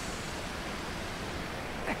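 Steady rush of creek water pouring over a low concrete spillway.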